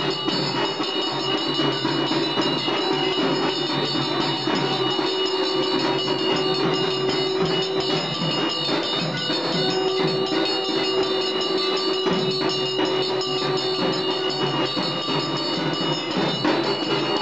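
A conch shell (shankh) blown in long, steady, horn-like notes, with a break for breath about eight seconds in, over fast drumming and clanging metal percussion. This is the ritual din that accompanies an aarti.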